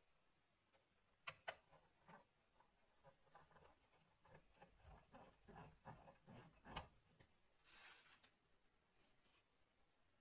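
Faint ticking and scraping of a small screwdriver turning a Phillips screw that holds a replacement MacBook battery in its bay, a run of small clicks over several seconds, the sharpest two near the start.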